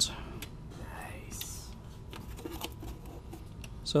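A quiet stretch with a faint whispered voice and a brief breathy hiss about a second and a half in, plus a few light clicks.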